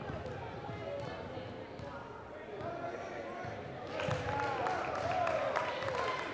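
A basketball bouncing on a hardwood gym floor as a player dribbles it, with scattered voices of players and spectators in the gym. The bounces come as a quick run of sharp knocks, louder from about four seconds in.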